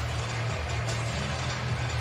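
Basketball arena ambience from a game broadcast: a steady low hum under an even wash of room and crowd noise, with no ball bounces or shoe squeaks standing out.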